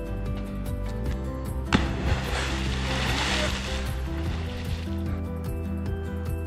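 Background music, and about two seconds in a person jumps into a river from a bridge with a sharp splash, followed by a few seconds of spraying water.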